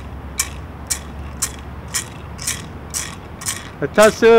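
Gourd rattle shaken in a steady beat, about two shakes a second, keeping time for a song. A man's voice starts singing at the very end.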